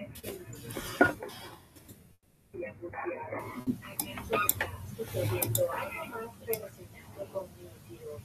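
Indistinct, low speech coming through a video call, broken by a few sharp clicks or clinks in the second half.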